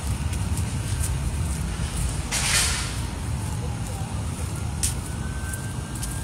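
Street traffic rumbling steadily, with a short hiss about halfway through and a faint siren slowly rising near the end.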